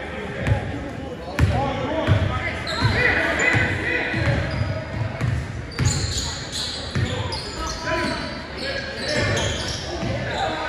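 Basketball being dribbled on a hardwood gym floor, a run of thuds ringing in the large hall, with short sneaker squeaks as players cut in the second half.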